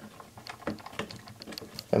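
Light, irregular clicks and taps of a small screwdriver tip and fingers working against the plastic WAGO spring-clamp connector of a robot's power distribution board, as the screwdriver is levered in to open the wire slot.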